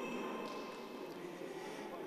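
Faint, steady background noise of an indoor sports hall, with no distinct event.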